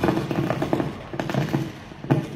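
Microphone crackling and popping in a rapid, irregular run of loud pops and bursts of noise: a fault in the microphone.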